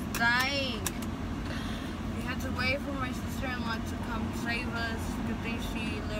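Voices talking over a steady low rumble, with one loud, high-pitched call just after the start.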